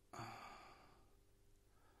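A man sighs once, a soft breathy exhale that fades out over about half a second.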